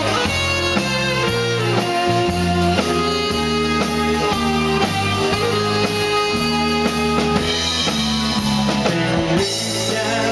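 Live dance band playing an instrumental passage: a saxophone carries the melody over bass, drums and keyboards.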